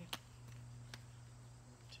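Juggling balls smacking into the hands as they are caught in a three-ball pattern: one sharp catch just after the start and a fainter one about a second in. A faint steady low hum runs underneath.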